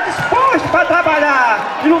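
A man speaking Portuguese into a handheld microphone, in a continuous run of speech.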